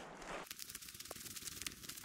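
Faint crackling of footsteps on dry forest-floor litter of pine needles and twigs, a scatter of small ticks.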